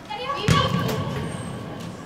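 Girls' voices calling out during an indoor soccer game, with one sharp thud about half a second in, a ball being kicked.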